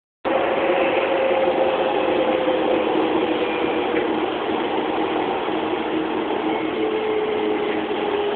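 Docklands Light Railway train running: a steady mechanical rumble with an even hum that falls slightly in pitch.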